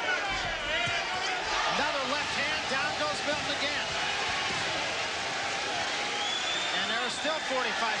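Arena crowd shouting and cheering at a knockdown, many voices overlapping, with a dull thud under a second in.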